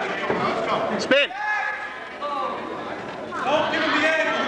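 Voices of spectators and coaches calling out in a school gym, with one loud, short shout about a second in and more calling near the end.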